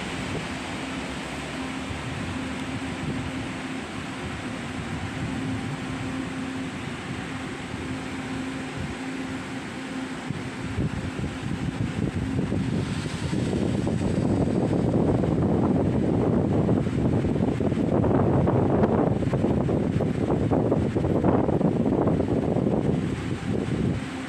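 Steady low hum of a railway station platform, giving way about halfway through to a louder, uneven rumble that lasts to the end.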